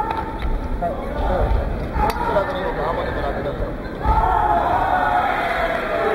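Crowd and corner voices shouting in a large hall during a full-contact karate bout, the shouting swelling about four seconds in. A couple of sharp smacks, strikes landing, cut through near the start and about two seconds in.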